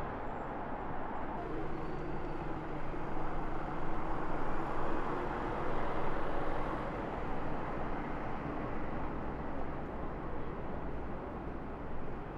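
City street traffic: a steady rumble of vehicles that swells a little louder between about three and seven seconds in.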